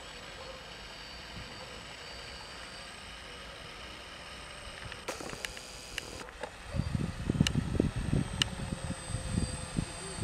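Quadcopter drone hovering at a distance, a faint steady hum with a thin whine. From about seven seconds in, low rumbling gusts hit the microphone, louder than the drone, with a few sharp clicks among them.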